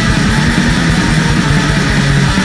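Black thrash metal recording: distorted electric guitars over fast, dense drumming, loud and unbroken.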